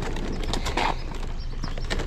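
Loaded folding hand truck rolling over rough pavement, its small wheels and metal frame rattling with irregular clacks and knocks.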